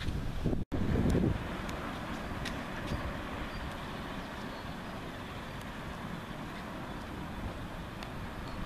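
Steady outdoor background noise, a low rumble with hiss and a few faint clicks, with a short dropout and a brief louder patch about a second in where the shot cuts.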